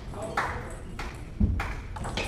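Celluloid-type table tennis balls clicking off bats and table tops: a few sharp, separate ticks, with a heavier thump about one and a half seconds in.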